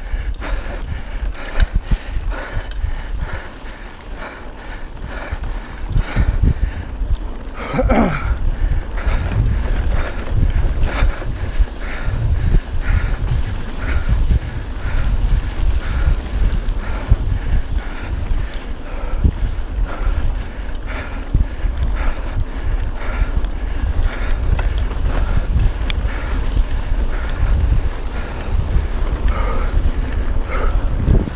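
Mountain bike riding fast on a wet dirt and gravel road: tyre and drivetrain noise with rattling, under heavy wind buffeting on the camera's microphone. A brief pitched sound breaks through about eight seconds in.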